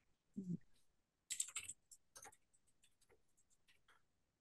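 Faint typing on a computer keyboard: an irregular run of quick clicks, busiest in the middle and thinning out toward the end, after a soft low thump about half a second in.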